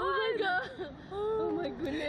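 Women's voices making wordless, wavering cries and drawn-out moans while being flung on a slingshot thrill ride.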